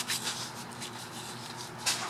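A hand pressing and rubbing loose potting soil in a plastic pot: faint rustling, with a short scratchy scrape near the end.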